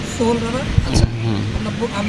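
Street ambience of passing road traffic with a brief stretch of voice near the start, and two short low knocks about a second in.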